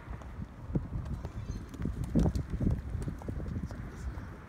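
Footsteps on concrete, a run of uneven knocks that come thickest about two to three seconds in, over a low rumble.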